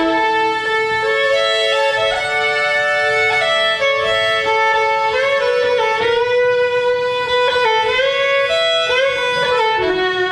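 Fiddle playing a slow waltz melody in long held notes with slides between them, over acoustic guitar accompaniment.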